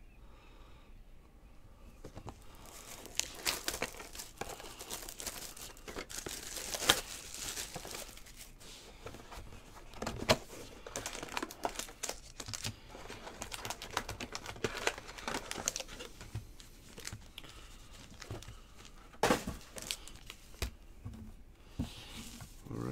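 Plastic shrink wrap being torn and crinkled off a sealed cardboard box of trading cards, then the box being opened, with many sharp crackles. It starts about two seconds in.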